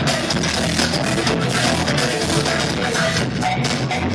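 Live band playing loud amplified music, drum kit and electric guitar over a heavy low end, with no vocals.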